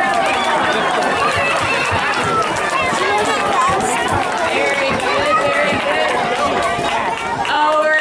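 A crowd of onlookers chattering, many voices overlapping with no single clear speaker.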